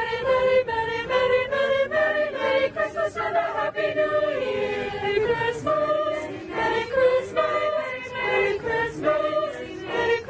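A choir singing a Christmas song, many voices together in sustained, shifting notes.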